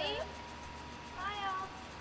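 Faint, brief high-pitched vocal sounds from a young child, the clearest about a second in, rising and then falling in pitch.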